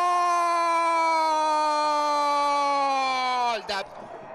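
A football commentator's long, drawn-out goal shout: one unbroken held cry, its pitch sinking slowly, which breaks off near the end.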